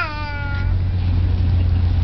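A nine-month-old baby's high-pitched squeal that falls in pitch and trails off within the first second, over a steady low rumble.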